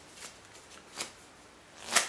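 Playing cards being handled: a soft swish of the spread deck, a sharp click about halfway, then a swish building to a sharp snap near the end as the spread is closed and squared into a deck.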